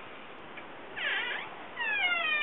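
A pet animal crying: one short call about a second in that rises and falls in pitch, then a longer call that falls in pitch near the end.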